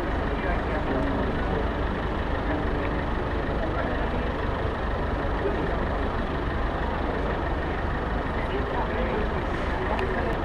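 Steady city street noise: a constant low traffic rumble with many people's voices chattering.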